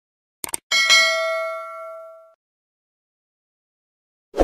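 Subscribe-animation sound effect: a quick double mouse click about half a second in, then a bright bell ding that rings out and fades over about a second and a half, as the notification bell is clicked.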